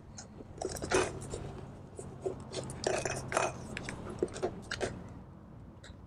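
Paper and card being handled and pierced with a pointed tool to make a hole for a string: irregular crinkles, scrapes and small clicks.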